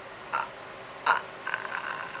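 A man's two short breathy vocal sounds from the mouth, about three-quarters of a second apart, the second louder, followed by fainter mouth noises.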